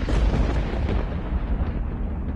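A sudden deep boom that fades out over about a second and a half, over a steady low rumble.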